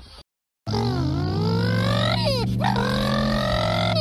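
A cat yowling: one long, loud, unbroken cry whose pitch wavers down and back up, starting just after a brief silence.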